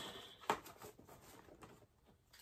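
Faint handling noise as items in a gift basket are taped down: one sharp click about half a second in, then light scattered ticks and rustles of plastic packaging.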